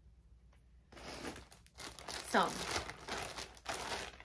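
Clear plastic bag crinkling as it is handled and opened, a dense, crackly rustle that starts about a second in and carries on to the end.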